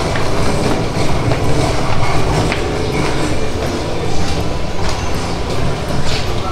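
Loud, steady low rumble with scattered light knocks: handling noise and footsteps picked up by a handheld camera carried up the entrance steps.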